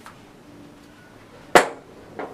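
A single sharp knock about one and a half seconds in, dying away almost at once.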